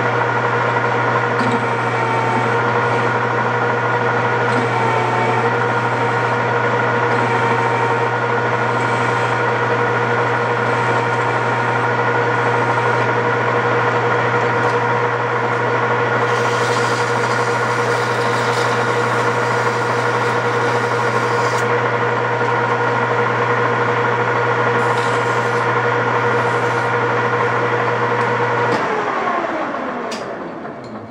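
13x40 metal lathe running with a steady whine and hum while a bevel is machined on the inside edge of a bushing sleeve. Near the end the machine is switched off, and the whine falls in pitch and fades as the spindle slows.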